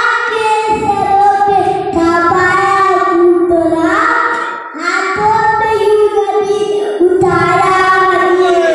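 A young boy singing a devotional song into a microphone, solo and loud, in long held notes broken into phrases by short pauses for breath.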